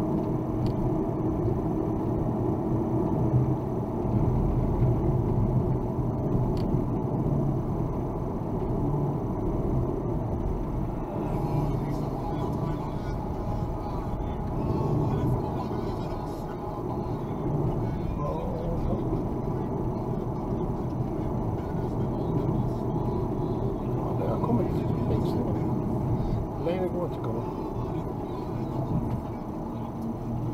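Steady engine and tyre noise heard inside a car cruising at around 70 km/h, with faint talk underneath.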